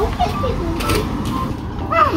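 Voices of a man and young children talking over a steady low rumble, with a brief rustle about a second in.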